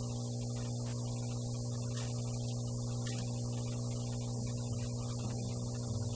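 Steady electrical mains hum in the microphone and sound system: a constant low buzz with a ladder of overtones above it.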